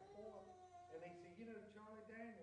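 Faint speech: a person telling a story too far from the microphone for the words to come through clearly.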